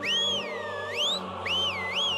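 A cartoon-style whistle sound effect sliding up and down in pitch, cutting off once and then warbling, over background music.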